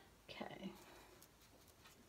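Near silence: room tone, with a brief, faint murmured word from a woman about half a second in.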